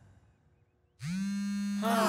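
A steady buzzing tone that starts about a second in, with a second, wavering tone joining it near the end.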